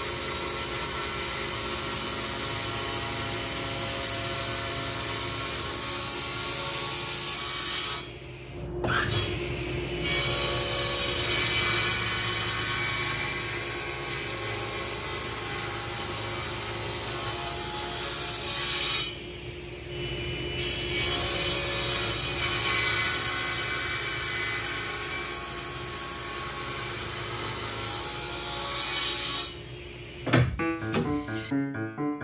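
Table saw running and cutting through a thick slab of Richlite (paper-based phenolic composite), tough stuff for the blade. The steady cutting sound is briefly quieter twice, about 8 and 19 seconds in.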